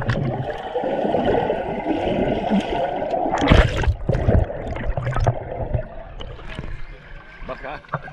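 Swimming-pool water heard through an underwater camera: muffled rushing and bubbling as swimmers move about, with a louder burst of splashing about three and a half seconds in, then quieter in the last couple of seconds.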